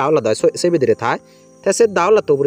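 A voice narrating, with a brief pause a little past one second in where faint background music shows through.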